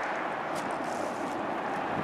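Steady hiss of distant city traffic, with no single event standing out.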